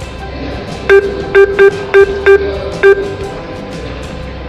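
Cash-machine keypad beeping six times, short identical tones, as a 6-digit PIN is keyed in, over background guitar music.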